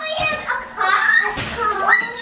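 Young children's high-pitched voices chattering, with a quick rising cry near the end.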